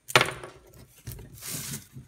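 Steel parts being handled on a paper-covered table: a sharp clack just after the start as a carriage bolt is set down, then a brief scraping rustle as a steel circular saw blade is slid across the paper.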